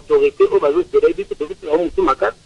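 Speech: a person talking continuously.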